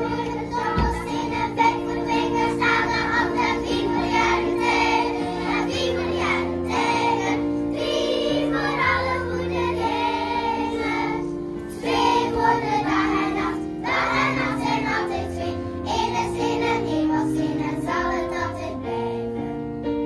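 Children's choir singing in unison with piano accompaniment, the voices holding long notes over a moving bass line.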